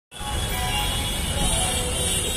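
Steady road-traffic noise, a low rumble with hiss, with music playing in the background.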